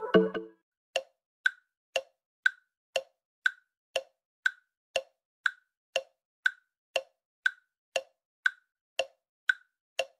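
Countdown-timer tick-tock sound effect: short clicks two a second, alternating between a lower and a higher tick. The tail of electronic music fades out in the first half second.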